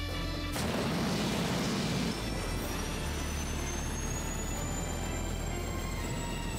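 Background music with a rocket-thruster sound effect for an animated spacecraft launch. A sudden burst of noise comes about half a second in and lasts about a second and a half, followed by a long, slowly rising high whine.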